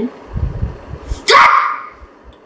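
A child's voice making one short, loud, breathy burst about a second in that fades within half a second, a mouth sound effect for a failed experiment.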